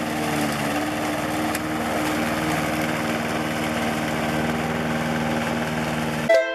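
Walk-behind petrol rotary lawn mower running steadily as it cuts grass.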